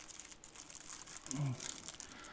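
Thin clear plastic bag crinkling as it is handled, a quiet, irregular crackle.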